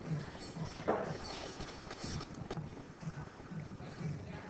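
Pool hall background noise while a player lines up a shot: a low murmur of distant voices and a few faint, sharp knocks, the clearest about a second in.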